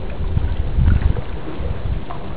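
Wind buffeting the microphone: a low, uneven rumble, loudest about a second in.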